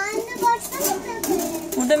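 A young child's voice, speaking unclearly in short bursts, with a few light clicks from toys being handled.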